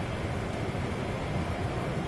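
Steady outdoor rushing noise, heaviest in the low end, with no breaks or distinct events.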